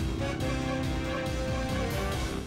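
Background music score of a TV drama: held notes over a faint, steady pulse, under a silent reaction shot.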